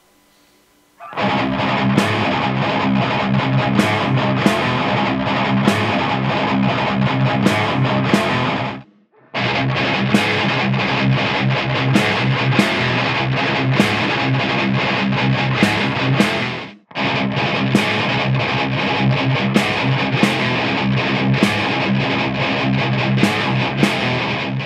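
Distorted electric guitar through a guitar amp, two takes panned hard left and right, played with snare drum hits that carry slight reverb and compression, all recorded with an AKAI ADM 40 dynamic microphone. It starts about a second in and breaks off briefly twice.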